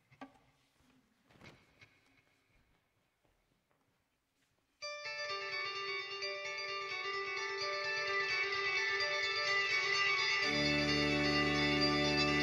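After a few seconds of faint small stage noises, an electric guitar starts a sustained, ringing intro about five seconds in. A deep low tone joins near the end and the music grows louder.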